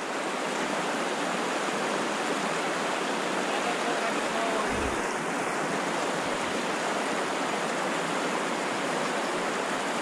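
River water rushing over rapids below a falls: a steady, even rush of current.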